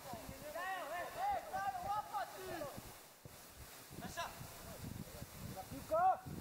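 Players shouting across an outdoor football pitch, several short calls early on and again near the end, heard at a distance over open-air background noise.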